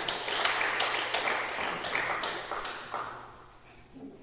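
A run of sharp taps, two or three a second, echoing in a large hall over a faint hiss. The taps thin out and fade to quiet near the end.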